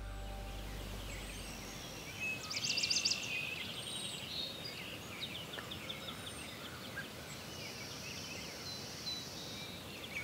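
Small birds chirping and trilling over a steady background hiss, with the loudest rapid trill about two and a half seconds in. The last of a music track fades out in the first second or so.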